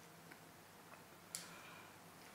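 Near silence: faint room tone with a few soft ticks and one sharper click about one and a half seconds in.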